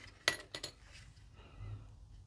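Hard plastic clicking and clinking as a hollow polystyrene model car body is handled and turned over. There are a few small knocks within the first second.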